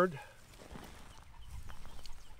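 Faint rustling and scraping of wood-chip mulch being spread and patted down by gloved hands around a young tree.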